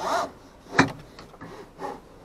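Seatbelt webbing being pulled out of a newly installed universal retractor and drawn across the seat, a rubbing, sliding sound in a few short bursts, the sharpest about a second in.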